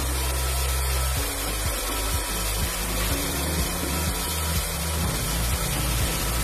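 Handheld hair dryer blowing steadily, a broad even rush of air, drying the back of the hair after a cut. Background music with a low bass line plays underneath.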